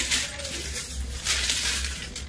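Stiff organza fabric rustling and crinkling as it is handled and spread out by hand. There is a short rustle at the start and a longer one in the second half.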